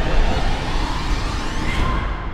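Cinematic trailer sound effect: a deep rumble under a dense swell of noise with a rising whine, building toward the end and then fading away.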